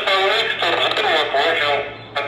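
Speech only: a voice talking, sounding narrow like radio or telephone audio.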